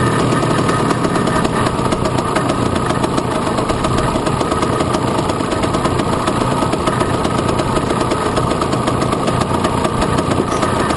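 Piaggio Ape racing three-wheeler's small engine running steadily at low revs, picked up close by a camera mounted on the vehicle, as it moves off slowly.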